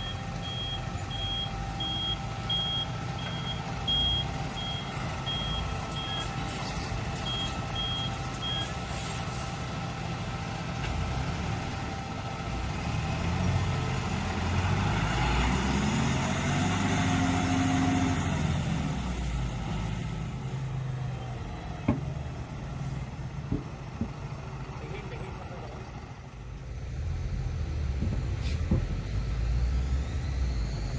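Road-rail vehicle's reversing beeper sounding about twice a second, with a short break, for the first nine seconds over its engine. Then the engine runs up louder, its pitch rising and falling, as the truck drives off.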